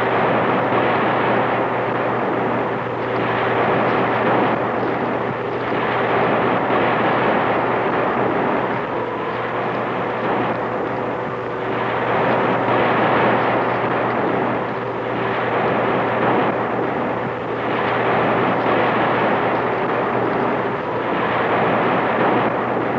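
A steady roaring rumble that swells and fades every couple of seconds, with a faint steady hum under it.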